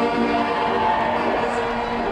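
Pipe band's bagpipes playing, a melody over steady held drone notes.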